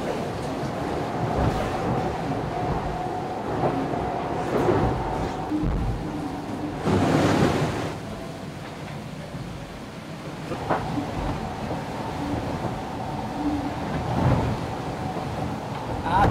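Sea and wind noise aboard an IMOCA 60 racing yacht under way, heard from inside the cabin: water rushing along the hull, with a steady hum through the first six seconds and a louder surge of water about seven seconds in.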